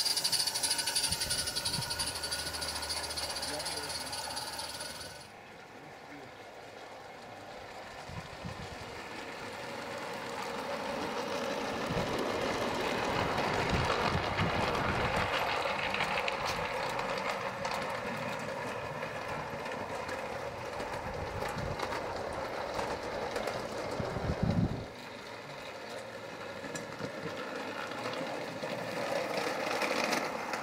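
Model garden-railway trains on 16mm-scale track: first a small live steam locomotive hissing steadily for a few seconds, then a train running over the rails, building up for several seconds and then easing off, with voices in the background.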